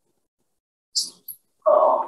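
A short high hiss about a second in, then a loud, brief vocal sound near the end.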